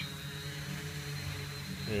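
Hobby King Alien 560 quadcopter's electric motors and propellers humming steadily as it descends under GPS and barometric hold after a slight throttle drop.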